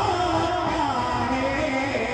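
A man singing a naat into a microphone: one drawn-out melodic line that glides slowly down in pitch.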